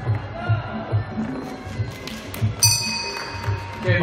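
Muay Thai fight music with a steady drum beat, and a bright bell ring about two and a half seconds in.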